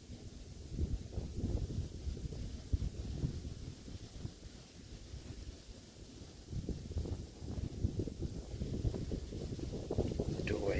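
Wind buffeting the microphone: an irregular low rumble in gusts that eases off in the middle and picks up again past halfway.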